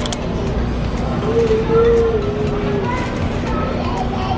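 Steady low rumble and hum of a supermarket aisle, with a voice-like note held for about a second and a half in the middle.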